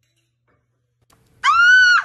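A husky-type dog gives one loud, high-pitched howling yelp about half a second long near the end. The call rises in pitch, holds, then drops slightly as it stops.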